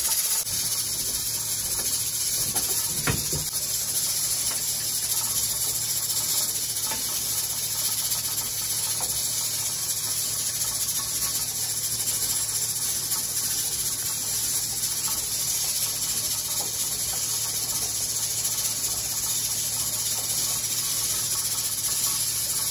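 Steady high hiss of steam venting from a stovetop pressure canner, driving the air out before the weighted regulator goes on, over a low steady hum. A single brief low thump about three seconds in.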